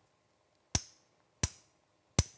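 Steel surgical mallet striking the green handle of a trocar and cannula twice, about 0.7 s apart: sharp taps with a short ring, driving the 11-gauge cannula further into the talus.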